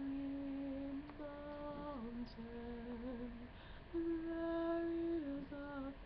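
A man humming a slow, wordless melody unaccompanied. He holds long notes, each stepping or sliding down to a lower one, with a brief pause partway through and then a higher held note.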